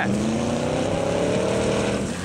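Ex-police Ford Crown Victoria Police Interceptor's V8 revving hard under load as the car slides on loose dirt, its pitch climbing slowly, over a steady rush of noise.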